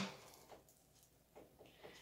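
Near silence: room tone with a few faint small clicks from hands handling scissors and zip ties.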